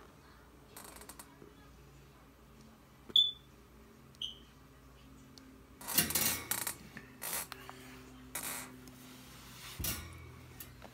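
Quiet handling of an iPad in a plastic case: two short high pings about a second apart, then several brief rustling scrapes.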